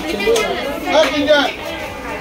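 Indistinct voices talking: background chatter of people at a shop counter.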